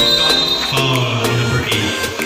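Background music with a steady beat and sustained instrumental notes.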